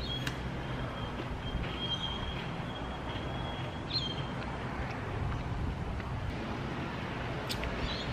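Steady low rumble of distant road traffic with a constant hum underneath. A faint thin high tone runs through the first half and ends in a short upward flick about four seconds in.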